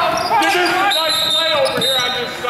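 Basketball dribbled on a hardwood gym floor, echoing in a large gym, with spectators' voices over it. A high tone is held for about a second in the second half.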